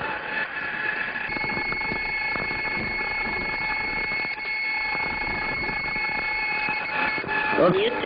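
Steady high-pitched cockpit warning tone in the MiG-AT trainer, starting about a second in and stopping near the end, heard over a constant hiss of the cockpit intercom recording.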